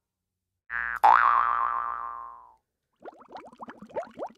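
A cartoon 'boing' sound effect: a wobbling springy tone that starts about a second in and fades over about a second and a half. About three seconds in, a quick run of bubbly blub-blub sound effects begins.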